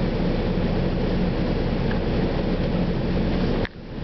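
Steady engine and road noise heard inside a moving coach, with a low engine hum; it drops away sharply near the end.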